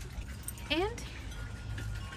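A woman says one word, "and", with rising pitch, over a steady low background rumble.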